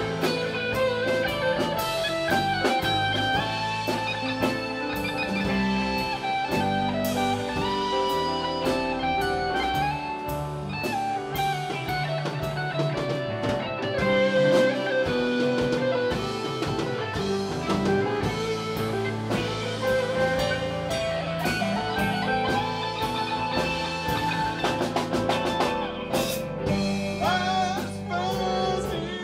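Live rock band playing an instrumental break: a lead guitar line over keyboard chords, bass and drum kit, with a drum fill near the end.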